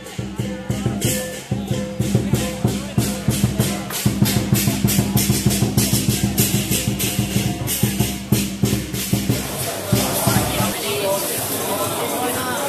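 Music with a fast, steady beat and shaker percussion over a crowd's voices; the music cuts out near the end, leaving people talking.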